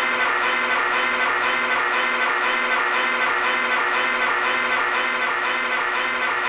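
Hardcore rave music from a DJ set in a breakdown: sustained brass-like synth chords with the bass and kick drum cut out.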